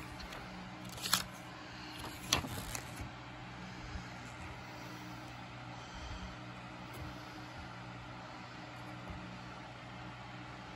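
Paper inserts and a plastic Blu-ray case being handled: two short, sharp handling noises about one and two and a half seconds in, then a few faint ticks. Under it runs a steady low hum.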